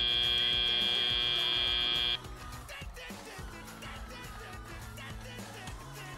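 End-of-match buzzer of a FIRST Robotics Competition field: one steady tone that cuts off suddenly about two seconds in, followed by quieter arena background sound.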